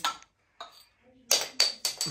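A glass beer bottle's crown cap is levered off with a second bottle, with a short pop right at the start. About a second and a half in come several clinks of glass with a thin ringing tone.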